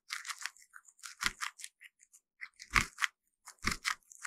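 Guinea pig chewing on a corn cob up close: an irregular run of crisp crunches as it bites off and chews kernels, the heaviest crunches in the second half.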